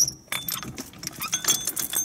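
Ready Brute tow bar being unlatched and its arms swung out: a sharp metal click at the start, then scattered clanks, with metal clinks and jangling of its hooks and cables near the end.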